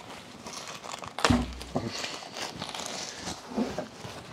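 Plastic wrapping of a compressed bale of wood shavings crinkling and rustling as it is pulled open by hand, with a thump about a second in as the bale is handled.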